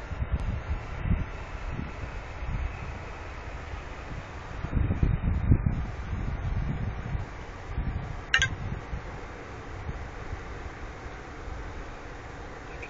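Wind buffeting a phone's microphone: an uneven low rumble that comes in gusts, strongest about five to six seconds in, with one brief sharp high sound a little after eight seconds.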